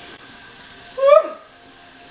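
Newborn baby's single short cry, a brief rising squeal about halfway through, over a faint steady hiss.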